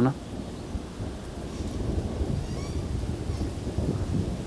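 Low rumble of thunder during a storm, growing louder over the few seconds, with rain in the background.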